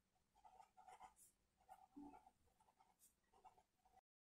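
Marker pen writing a line of words, heard as very faint short strokes.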